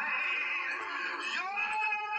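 Music with a singing voice holding a wavering note, then sliding up to a new held note about one and a half seconds in.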